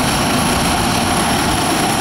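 Let L-410 Turbolet twin-turboprop airliner taxiing: steady, loud engine and propeller noise with a high turbine whine over it.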